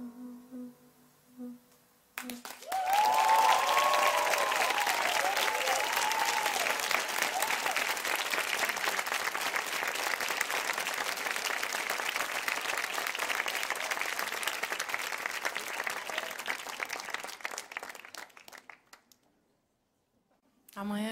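The last sustained notes of an acoustic pop ballad die away. About two seconds in, a studio audience starts applauding, with cheering over the first few seconds. The applause runs on steadily and fades out near the end.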